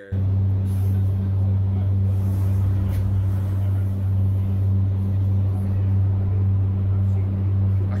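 Soundtrack of a played-back phone video filmed aboard a moving passenger vehicle: a steady low hum and rumble of the vehicle in motion with a noisy background, starting suddenly just as the clip begins to play.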